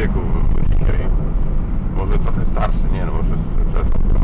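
Steady low road and engine rumble inside a moving car's cabin, with people talking at intervals over it.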